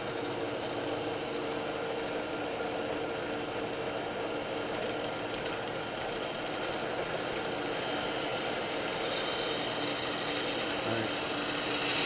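Bandsaw running steadily with its blade cutting through a thick wooden board on a bevel, a constant motor hum under the cutting noise. The sound grows a little louder towards the end as the cut goes deeper.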